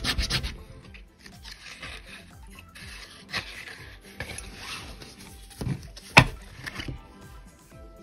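Paper scratch-off lottery tickets being handled, rubbing and sliding against each other and the tabletop in uneven bursts, with one sharp crisp snap about six seconds in.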